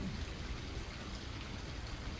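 Steady hiss of running creek water, an even wash of sound with no distinct drops or splashes.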